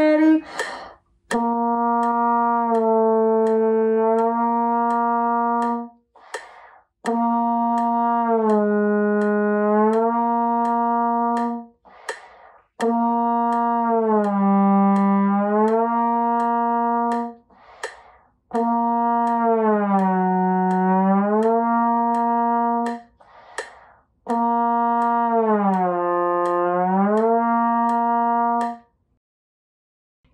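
Trombone playing five long tones of about five seconds each, with short breaths between them. In each tone the slide glides the pitch down and back up, and the dip grows deeper from one tone to the next: a long-tone exercise with glissando.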